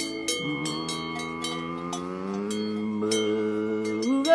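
Cowbell clanking about four times a second as the cow moves, with a steady ringing between strikes. Under it a cow lows in one long call that starts low and rises slowly in pitch.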